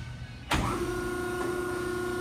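Hydraulic shear's electric motor and hydraulic pump switched on about half a second in: a sudden start, then running with a steady hum made of several constant tones.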